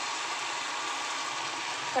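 Whole prawns frying in hot mustard oil in a kadai: a steady, even sizzle.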